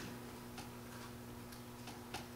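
Faint room tone during a pause in speech: a steady low hum over light hiss, with a couple of faint clicks.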